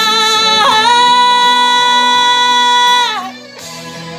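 A woman belting one long held note over a karaoke backing track. The note steps up in pitch just under a second in, holds steady, then slides down and ends about three seconds in, leaving the quieter backing music.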